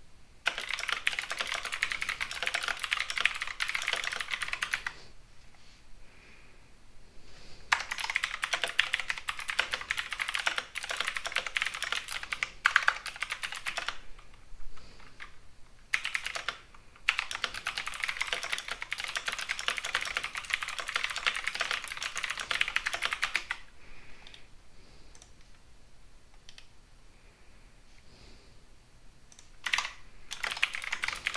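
Typing on a computer keyboard: fast runs of keystrokes lasting several seconds each, broken by short pauses, with a brief run again near the end.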